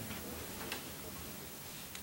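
Quiet room tone of a meeting room: a steady faint hiss with a single faint tick about a third of the way through.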